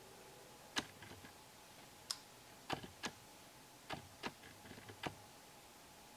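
Scattered sharp clicks, about seven, irregularly spaced, as fingers with long fingernails work thread into a double knot: nails tapping against each other.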